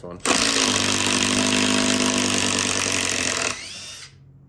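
Makita 18V cordless impact driver hammering steadily for about three seconds as it runs a long drill bit into a wooden log, then stops with a short rising whine as the motor winds down.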